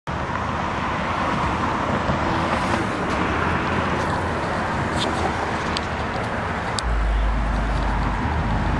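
Handling noise on a handheld camera's microphone outdoors: a steady rumble and hiss, a few sharp clicks in the second half, and a deeper rumble starting near the end.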